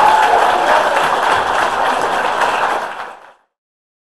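Audience applause, a dense clatter of clapping with a whoop fading at the start, cutting off abruptly a little over three seconds in.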